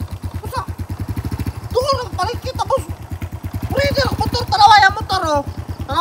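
Small single-cylinder four-stroke engine of a Honda underbone motorcycle idling steadily, a fast, even low putter.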